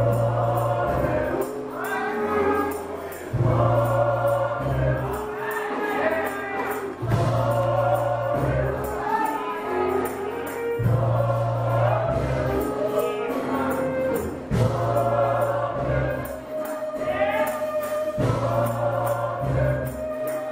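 Gospel choir singing in full voice with band accompaniment: low bass notes recur every couple of seconds under the voices, and a tambourine jingles a steady beat throughout.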